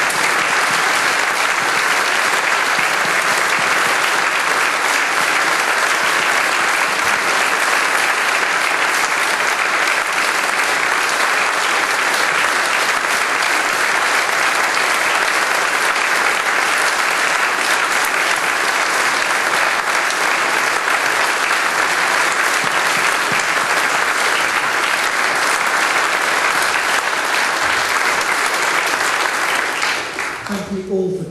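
A large audience applauding steadily and without pause, a standing ovation.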